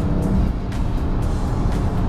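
In-cabin sound of a BMW M3 CS's twin-turbo straight-six being driven hard on track, a low rumble of engine and road noise under background music. A steady held tone stops about half a second in.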